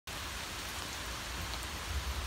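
Steady rain falling, a continuous even hiss.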